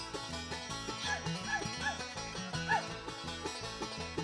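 Live bluegrass instrumental: banjo picking over acoustic guitar, with four short notes that slide in pitch, yelp-like, in the middle.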